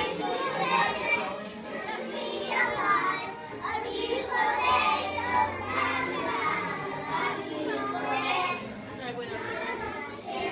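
A group of young children's voices, singing and calling out together over recorded music, echoing in a large hall.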